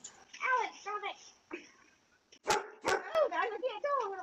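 Short pitched cries from the animals crowding the box: one early, one about a second in, and several close together near the end. Two sharp knocks come a little past halfway.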